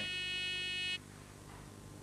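A steady electronic buzzer tone that cuts off suddenly about a second in, followed by faint room hum.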